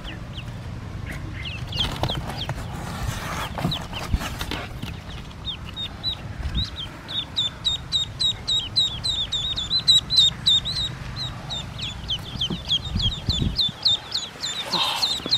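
Newly hatched Pekin ducklings peeping: a fast, busy run of short, high peeps that starts a few seconds in and carries on, with some rustling of handling in straw early on.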